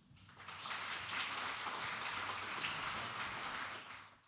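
Audience applauding in a lecture hall, starting about half a second in, holding steady, and fading out near the end.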